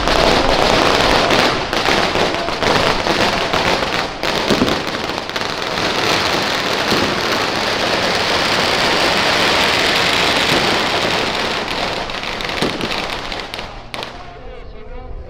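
A long string of firecrackers going off in a dense, continuous crackle, cutting off near the end.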